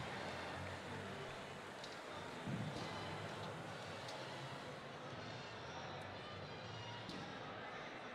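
Faint ambience of a large gymnasium arena: distant crowd voices with a few light knocks.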